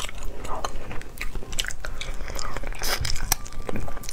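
Close-miked mouth sounds of eating spicy braised rabbit head: biting, chewing and crunching small pieces of meat and cartilage, heard as an irregular run of wet clicks and smacks.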